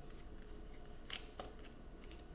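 Tarot cards handled on a tabletop: quiet handling with two crisp clicks a little past a second in.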